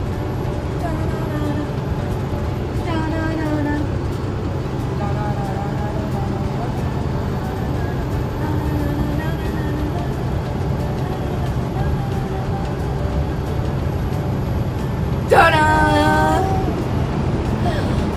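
Steady low drone of a semi truck's engine and road noise inside the cab while driving, with faint drawn-out vocal sounds over it and a louder voice about fifteen seconds in.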